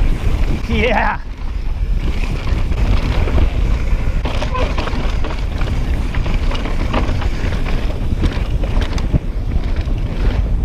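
Wind buffeting the microphone of a chest-mounted camera on a mountain bike descending dirt singletrack, with a steady low rumble from the tyres on the trail and the bike's frequent small clicks and rattles over bumps. A short rising squeal sounds about a second in.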